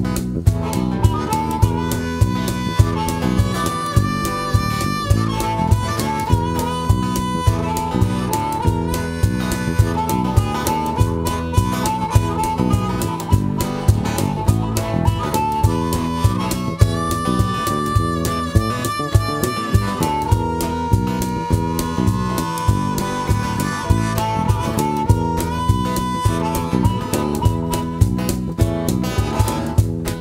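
Blues harmonica solo played cupped around a hand-held microphone, long held notes and bends, over bass guitar, guitar and cajon keeping a steady beat.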